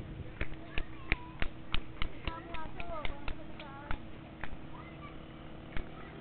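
A quick, fairly even series of sharp clicks, about three a second, stopping about four seconds in, with short squeaky gliding sounds among them in the middle.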